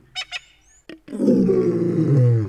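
An animal call: a few short clicks and high chirps, then, about a second in, a long low call that drops in pitch at its end.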